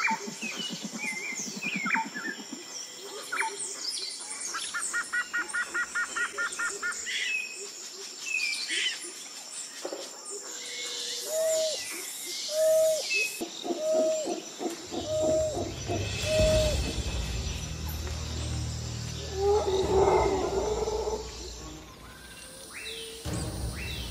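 Outdoor animal calls: high, short chirps throughout, a rapid trill about five seconds in, then a run of six or so hooting notes in the middle. A low rumble sets in just after the middle.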